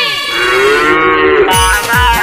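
One long, drawn-out moo of cattle that rises and falls in pitch. About a second and a half in, it gives way to music with a heavy, thumping drum beat about three times a second.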